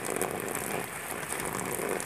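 Steady splashing and pattering of falling water on plastic sheeting.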